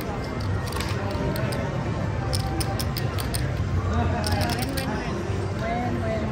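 Casino chips clicking as bets are placed and adjusted on the table: several sharp clicks, some in quick clusters, over steady casino background chatter and music.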